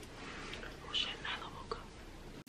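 A woman whispering softly, a few short breathy syllables about a second in.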